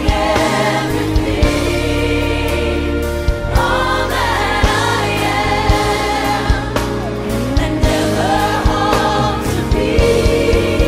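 Gospel music: several voices singing over a band, with a sustained bass and a steady drum beat.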